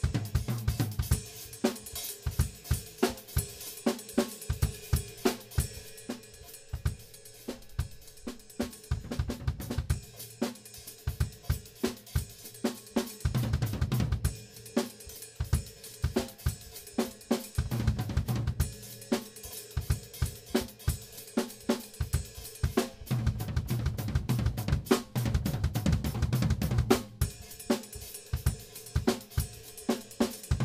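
Drum kit solo in 7/8 time: rapid snare, hi-hat and cymbal strokes over bass drum, with several stretches where heavier low-drum runs take over.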